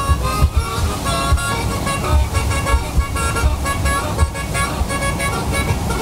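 Background music: held notes that change pitch over a steady low beat.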